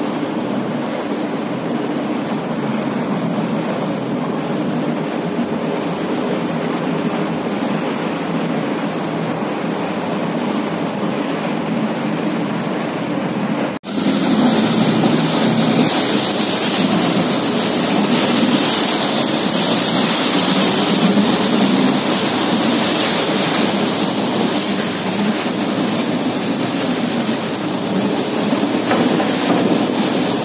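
Steady rumble of engines under the rush of water as a pilot boat runs alongside a ship's hull at sea. After a sudden cut about fourteen seconds in, the rush of water is louder and hissier.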